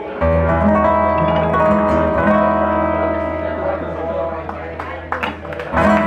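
Acoustic guitar, mandolin and electric guitar strike the song's closing chord together and let it ring. It is held steady for about five seconds and fades out near the end.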